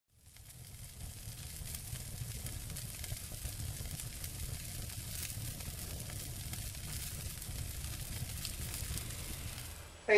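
Crackling, sizzling fire sound effect over a low rumble, with many fine crackles; it fades in over the first second and cuts off suddenly.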